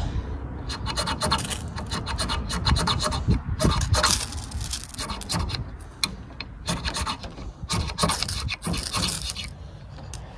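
The squared-off spine of a Mora knife scraped repeatedly down a ferrocerium rod: a run of short, irregular rasping strokes, each one throwing sparks onto a small pile of fatwood scrapings to light it.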